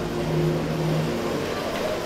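A low, steady hum with a held low tone that fades after about a second, over the background noise of a large hall.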